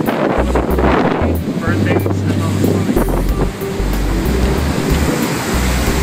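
Wind buffeting the microphone in uneven gusts over the steady rush of a boat's churning wake.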